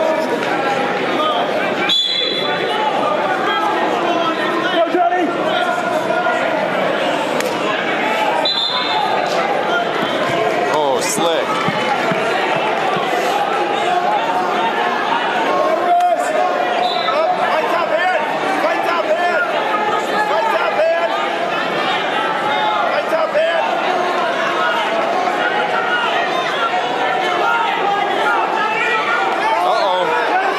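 Crowd noise in a large gymnasium: many people talking and calling out at once, with a few sharp thuds scattered through.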